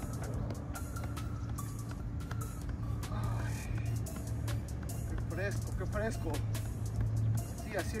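Soccer ball juggled with the feet, a short dull kick about two to three times a second, under background music and a low steady hum. A voice comes in near the end.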